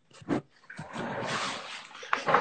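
Handling noise from a camera being repositioned: a short bump, then about a second of rubbing and rustling against the microphone.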